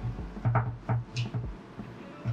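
A carbon-fibre top plate being handled and set down onto a quadcopter frame: a handful of light clicks and knocks in quick succession in the first second and a half as it is fitted over the air unit.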